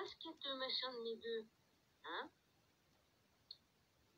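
Speech only: a woman's voice saying a few words in French, among them "attends", with one short click about three and a half seconds in.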